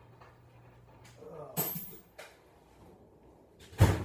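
Scattered knocks and clunks of someone rummaging for tools off camera, ending in one sharp bang near the end.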